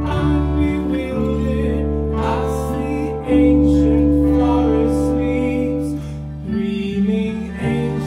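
Instrumental passage of a live rock band: acoustic and electric guitars over long held keyboard chords, the chord changing every two to three seconds.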